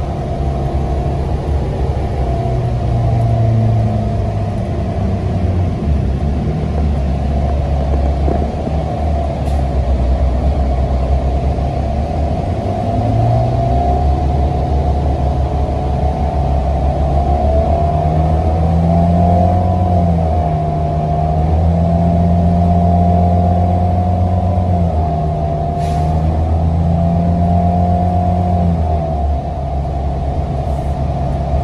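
Cabin sound of a NABI 42-BRT transit bus under way: engine and drivetrain running with a low hum, which steps up and down in pitch over the second half as the bus accelerates and shifts, and a wavering higher whine above it.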